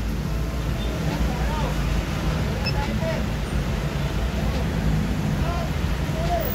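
A Yamaha Aerox scooter's single-cylinder fuel-injected engine is running with a steady hum at a very high idle, the fault being corrected through the idle speed control (ISC) reset.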